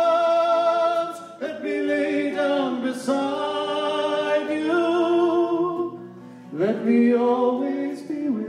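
Live bluegrass duo: a man and a woman singing in harmony over fiddle and acoustic guitar. It opens with a long held note that breaks off a little over a second in, then goes into phrases with sliding notes.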